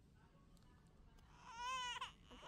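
A child's short, high-pitched whine-like vocal sound near the end, lasting about half a second, its pitch rising and then falling. Before it there is only faint room tone.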